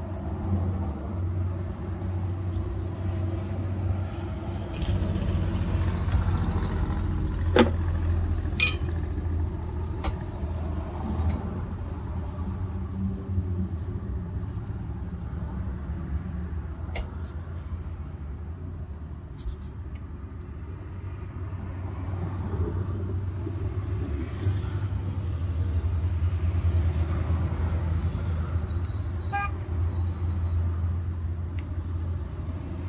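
Steady low rumble of city street traffic, growing louder in the last third, with a few sharp clicks and taps about a quarter of the way in.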